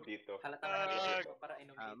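Voices on a voice call, with one drawn-out, held vowel lasting about half a second in the middle.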